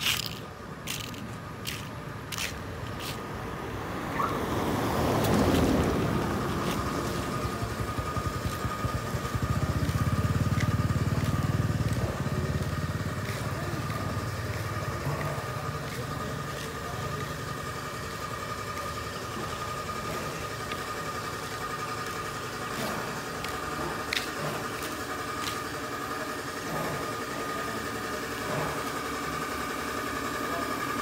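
A motor vehicle engine running with a steady whine and road noise. It swells louder about five seconds in and gives a low rumble around ten seconds in.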